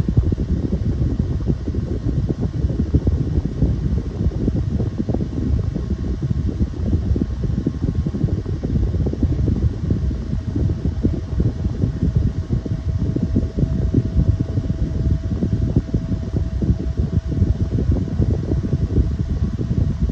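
A 2013 Airflo 6-inch plastic desk fan and a Challenge 9-inch chrome high-velocity desk fan running side by side on low speed, making a deep, steady rush of moving air. The Challenge is much the stronger of the two. A faint steady hum joins about halfway through.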